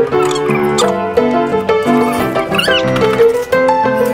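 Background music with a keyboard melody. A few short squeaky high-pitched chirps sound over it about a third of a second in, near the one-second mark, and again a little past halfway.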